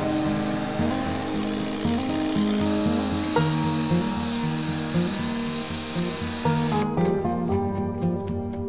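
Stihl chainsaw cutting into a log's end to form a notch, a steady, hissy saw noise under background music. The saw noise cuts off suddenly about a second before the end, leaving only the music.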